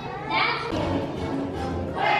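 A child's voice from the stage with music playing behind it.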